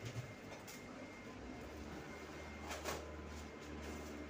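Faint rustling and handling noises of a flexible foil duct being worked onto its plenum box, with a short brushy crackle near the end. A steady low hum comes in a little over a second in.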